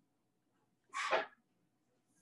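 A single short sneeze about a second in, heard over a video-call microphone.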